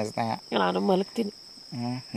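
Crickets calling in a steady, high-pitched, unbroken trill, under a person talking.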